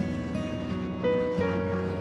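Background music: slow instrumental with held notes and chords changing about every half second to a second.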